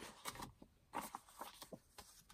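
Faint rustling and a few light taps of paper greeting cards being sorted by hand and set down on a cutting mat.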